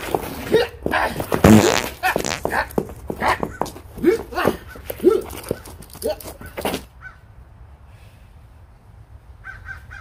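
Hard-soled dress shoes kicking and scuffing on a concrete path, mixed with short strained vocal sounds. It stops abruptly about seven seconds in. A crow starts cawing repeatedly near the end.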